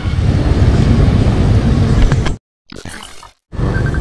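Wind buffeting the camera microphone over the motorcycle's running noise while riding. It cuts out suddenly about two and a half seconds in, leaving a second of near silence with a faint stretch in the middle, and the riding noise comes back shortly before the end.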